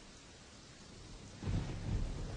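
A faint steady hiss, then a low rumbling noise that starts about one and a half seconds in and keeps going.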